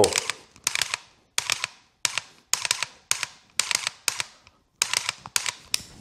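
Dry-fire trigger clicks from an AR pistol fitted with a Mantis Blackbeard, which resets the trigger after every pull so the rifle can be snapped again at once. About a dozen sharp clicks over six seconds, mostly in quick pairs with short pauses between, as the shooter moves from target to target.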